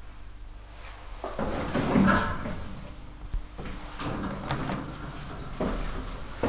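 Sliding doors of a 1983 KONE elevator car closing, with rumbling and a few knocks from the door mechanism in several spells starting about a second in.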